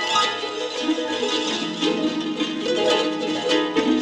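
Harp with live electronic processing: a dense, continuous mass of quick plucked notes overlapping and layered on one another, over a held low tone that drops to a lower pitch about a second and a half in.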